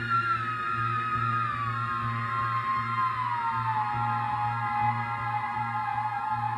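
Theremin playing a slow line that steps and glides down in pitch, then holds a lower note with a wide vibrato. A low electronic drone pulses steadily underneath.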